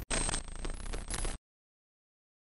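Short outro logo sound effect: a quick run of clinks and rattles that cuts off abruptly about one and a half seconds in, leaving digital silence.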